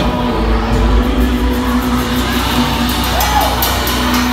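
A live band playing loudly, a drum kit's cymbals striking repeatedly over a steady bass.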